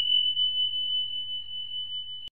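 A single high, steady ringing tone, an outro sound effect laid over the end card, struck sharply and fading slowly.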